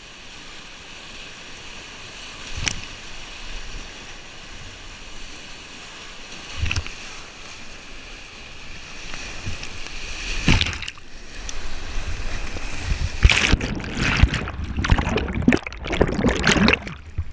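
Whitewater rapids rushing steadily around a kayak, with a few sharp splashes of water against the camera. Near the end the water turns to heavy, irregular splashing and churning as the kayak plunges through breaking waves and the camera goes under water.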